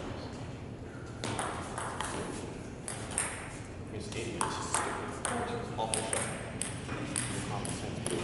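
Table tennis ball clicking sharply off the paddles and the table in a rally, a series of short pings, with voices in the hall.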